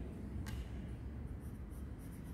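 Crayon rubbing on a textbook page in quick, faint back-and-forth colouring strokes, after a single light tap about half a second in.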